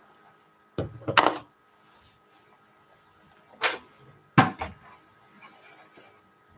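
Handling sounds at a quilting worktable: a short rustle and clicks about a second in, then two sharp knocks shortly before and after four seconds, as fabric scraps and a small hand iron are handled on the table.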